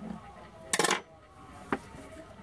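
Makeup brush and plastic cosmetic cases being handled: a short, rattling clatter just under a second in as items are put down and picked up, then a single sharp click.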